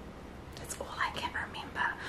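A woman whispering faintly under her breath, a few soft unvoiced syllables starting about half a second in.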